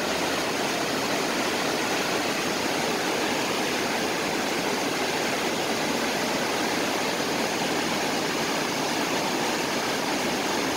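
A river's whitewater rapids rushing: a steady, even noise of running water that does not change.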